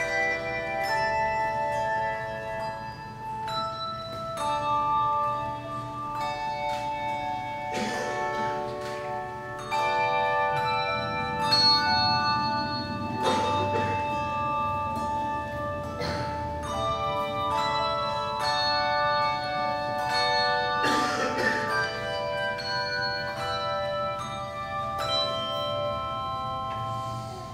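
Handbell choir playing a piece: handbells struck in overlapping chords and melody notes, each tone left to ring on, with a few sharper strokes in between.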